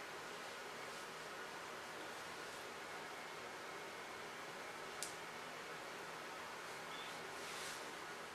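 Quiet steady hiss of room tone, broken by a single sharp click about five seconds in and a soft rustle near the end.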